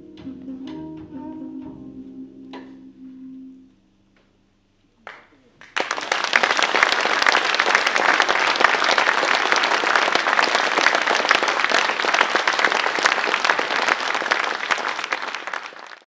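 A live jazz band's last held notes ring out and die away. After a moment's quiet the audience breaks into loud, steady applause, which fades out at the end.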